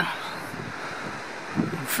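Steady outdoor background noise, an even hiss with no distinct events, in a pause between spoken words.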